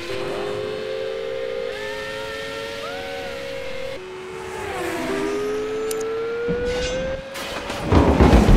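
Race car engine accelerating: a steady note that climbs slowly in pitch, drops around four to five seconds in as if shifting gear, then climbs again. A low rumble builds near the end.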